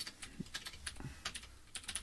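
Typing on a computer keyboard: an irregular run of faint key clicks as an email address is entered.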